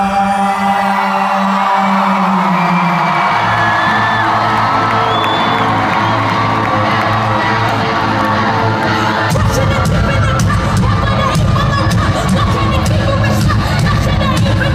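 Live rock band playing in a large hall, with the crowd cheering over it. The bass and drums drop out at first, a bass line comes back in about three seconds in, and the full band with drums comes back in about nine seconds in.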